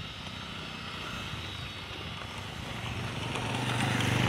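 Motorcycle engine running as the bike rides toward the listener, growing louder over the last second.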